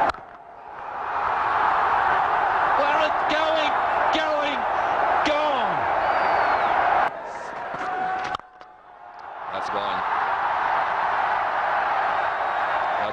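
Large stadium crowd cheering and shouting after a six, with single voices yelling above the roar. The noise drops out abruptly right at the start and twice more around the middle, then swells back each time.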